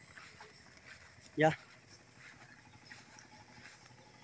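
Quiet outdoor background with one short spoken word about a second and a half in, and a faint high-pitched sound coming and going in the background.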